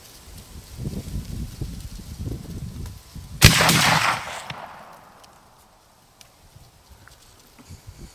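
A single muzzleloader rifle shot about three and a half seconds in, sudden and loud, its boom rolling away and fading over the next two seconds. Faint low rustling comes before it.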